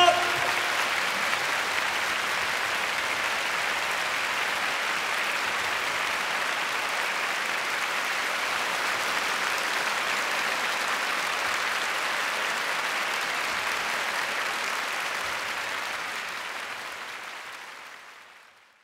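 A concert audience applauding steadily after the final chord of an orchestral show-tune performance, fading out over the last few seconds. The orchestra's last note, with brass, dies away in the first moment.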